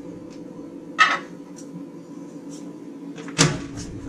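Loading a convection microwave oven: a knock about a second in as the metal pan goes in, then the oven door pushed shut near the end, over a faint steady hum.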